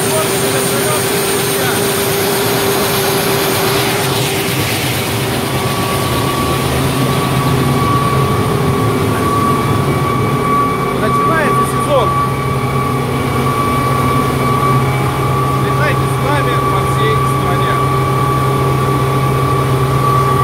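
Mi-8 helicopter's turbine engines running: a steady whine over a drone. About five to six seconds in the sound changes, as a higher whine and a deeper hum set in and hold steady.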